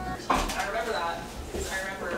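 A person's voice in two short pitched phrases without clear words.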